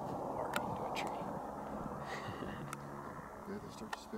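Distant helicopter running as a steady drone, with a few sharp clicks over it.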